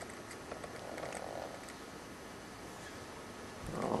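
Faint room tone with a few light clicks and a soft rustle as a camcorder is handled and its zoom reset.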